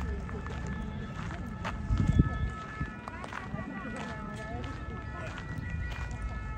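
Outdoor city ambience of people talking indistinctly, with footsteps and a low thump about two seconds in.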